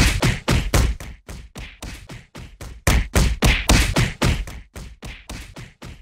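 A fast run of short thumps, about five a second, loud at first, softer for a while, loud again about three seconds in, then softer.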